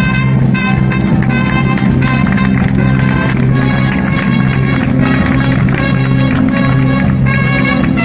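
Big band playing jazz live, with a standing trumpeter soloing over the band's sustained brass chords and a steady drum beat.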